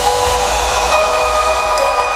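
Electronic dance music in a beatless passage: held synth pad chords over a hissing noise wash, with no drums. The chord changes about a second in.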